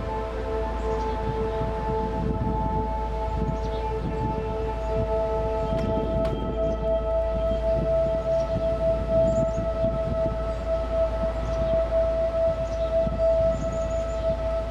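Background ambient music of long, steady held tones that shift slowly in balance, over a low hum.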